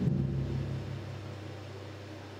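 A final low note from the band, struck together at the start and then ringing out as a deep, steady tone that slowly fades.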